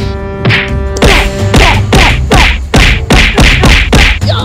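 Martial-arts fight sound effects: a rapid run of swishing hits, about four a second, starting about a second in. Before that, a held musical tone with a single hit.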